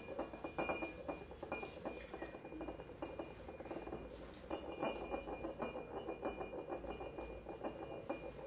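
Small metal percussion, such as little cymbals, clinking and rattling in a dense, irregular patter, with a faint high ringing tone held underneath.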